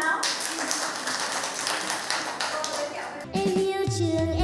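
Applause: a group of people clapping for about three seconds. Music comes in near the end.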